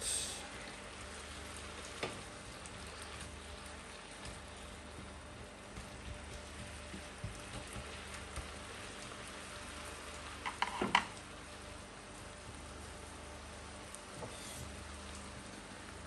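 Diced wild boar meat sizzling steadily in a frying pan as it is stirred with a spatula. A short burst of louder scrapes and knocks comes about eleven seconds in, and a louder clatter right at the end.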